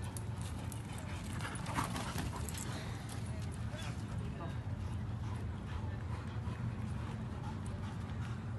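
A dachshund digging in loose dirt: its paws scratch and scrape the soil in many quick, irregular strokes, over a steady low rumble.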